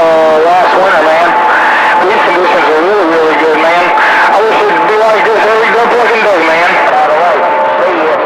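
Garbled, unintelligible voices coming through a CB radio receiver on channel 28, with a steady whistle under them that shifts lower in pitch near the end.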